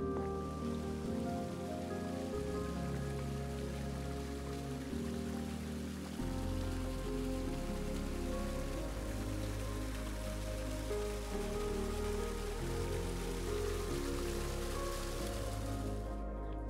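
Steady hiss of falling water over background music made of sustained low notes that shift every few seconds; the water noise cuts off suddenly at the end.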